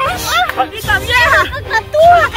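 Several voices shouting over one another, mostly high-pitched women's and children's voices, in a rough tangle of cries and exclamations.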